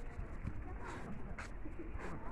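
Faint bird calls over quiet outdoor background noise.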